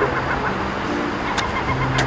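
Street ambience of passing road traffic with birds calling faintly, under soft, held low music notes that change pitch twice.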